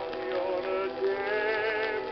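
Music from an acoustically recorded 1920 Columbia 78 rpm shellac disc of a male-quartet ballad: several sustained, gently wavering melody lines moving together. The sound has no high treble.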